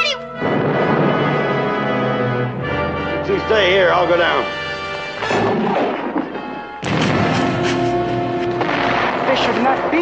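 Orchestral film score playing with shouting voices over it, and a sudden loud burst of noise about seven seconds in.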